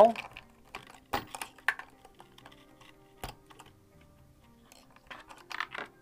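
Brushless motor wires being pulled off the speed controller's bullet connectors by hand: a sharp click about a second in, a few scattered clicks after it, and a flurry of clicks and rattles near the end as the motor and its wires are lifted away.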